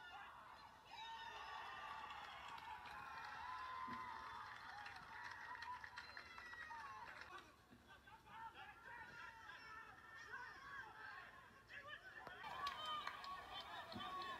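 Faint, distant shouts and calls of players on a football pitch during play, several voices overlapping, dropping away briefly about halfway through.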